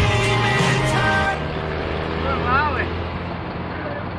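A rock song plays and cuts off abruptly a little over a second in. It gives way to the steady drone of a vehicle engine and road noise on the highway, with a brief voice about two and a half seconds in.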